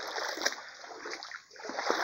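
Water splashing and sloshing as a person wades through a shallow creek, in uneven surges that grow louder again near the end.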